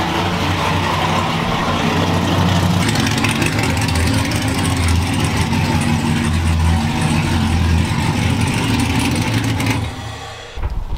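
Supercharged engine of a square-body Chevrolet pickup running at a steady idle, a deep even hum heard from behind the truck near its exhaust.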